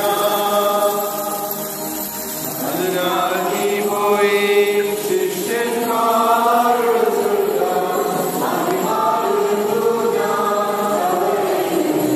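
Church singers chanting a slow liturgical hymn in long, held notes that glide from one pitch to the next.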